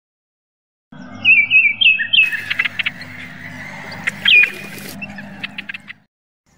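Songbird chirping: a quick run of short chirps starting about a second in, then one louder call about four seconds in, over a steady low hum, fading out at the end.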